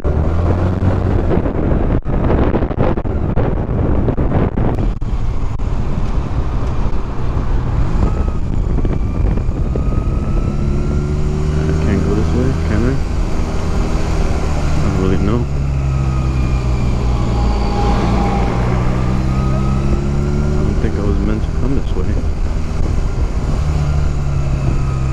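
Honda Rebel 250's parallel-twin engine running under way, its note rising and falling again and again with throttle and gear changes. Heavy wind buffeting on a helmet-mounted microphone is loudest in the first few seconds.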